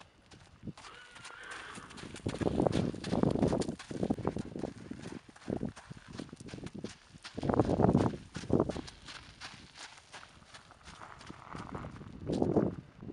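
Hoofbeats of a buckskin American Quarter Horse gelding trotting and loping under a rider on packed dirt and gravel, a quick run of strikes with two louder stretches of heavier low thudding. The horse has a stifle problem in its right hind leg and is being ridden to loosen it up.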